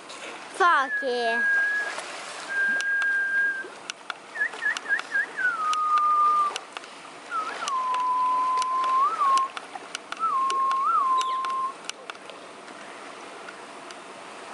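Seal howling: a series of five long, high, whistle-like calls, each held steady for one to two seconds. One opens with four quick chirps and glides down into its held note, and the later calls sit lower and carry small upward blips.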